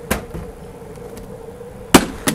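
A light knock just after the start, then a single sharp, loud knock near the end, with a faint steady hum in between.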